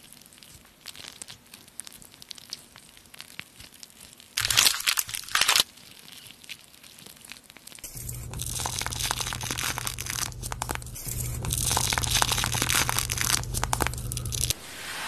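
Peel-off face mask being pulled slowly away from the skin in the second half, a long run of crackling, tearing sound over a steady low hum. Before that there are faint ticks as the mask is brushed onto the face, and a brief loud crackle a little after four seconds in.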